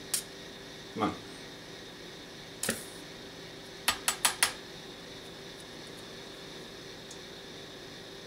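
A three-turn nichrome wire e-primer coated in dried smokeless powder, fed 24 volts, goes off with one brief sharp hiss about two and a half seconds after the power is applied. A small click of the clip touching comes at the start, and four quick sharp clicks follow over a second after the ignition.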